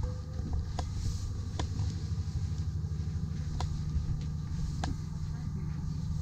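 Steady low machinery rumble with a faint pulsing to it, and a few short faint clicks spread through.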